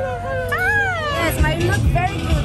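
Crowd chatter over background music, with a voice holding and sliding through long notes, rising and falling about half a second in, and a deep beat coming in near the end.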